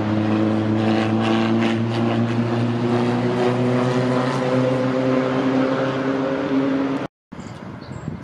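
A loud, steady engine drone from a passing motor, its pitch sinking slowly, cut off suddenly about seven seconds in.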